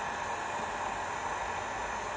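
Handheld hot air gun running on its lowest heat setting (about 50–100 °C), a steady rush of fan air.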